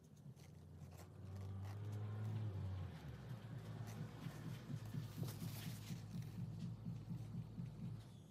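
Faint close handling sounds of a waterslide transfer being worked into place with a small tool: scattered light clicks and taps and a brief soft rustle about five seconds in, over a low hum that is loudest in the first three seconds and then turns into a low fluttering rumble.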